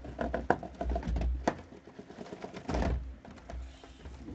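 A cardboard shipping case being pulled up off a stack of trading-card hobby boxes on a wooden table: a run of knocks and clicks of cardboard and boxes, the sharpest about half a second in, and a longer scraping rustle of cardboard near three seconds in.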